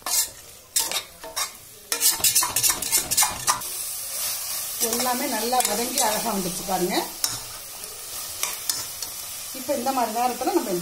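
Metal spatula scraping and knocking against the sides of a stainless steel pressure cooker as a thick masala of onions and tomatoes is stirred, with a steady sizzle of frying that sets in about two seconds in.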